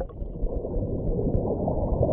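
Flowing, bubbling water heard with the microphone under the surface: a steady, muffled rush.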